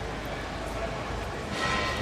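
Indistinct voices and the steady low hum of a large indoor hall, with a brief hiss about one and a half seconds in.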